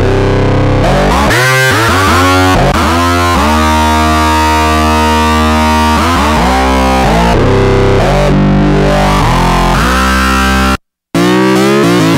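Novation Bass Station II analog synthesizer playing a factory preset: long held notes rich in overtones, several opening with a quick swoop in pitch. The sound cuts off suddenly about eleven seconds in, and a different patch starts a moment later.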